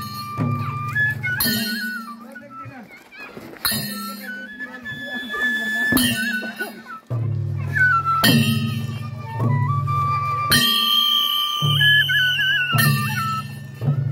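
Transverse flute playing a folk melody in steady held notes, over a beat of drum and ringing metallic strikes about every two seconds.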